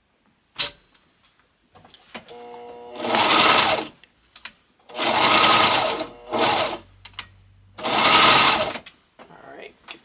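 Consew sewing machine running in four short bursts of about a second each, the third one briefly, as it sews a zigzag stitch through the edge of carpet. Between the bursts it stops, and there is a single sharp click just under a second in.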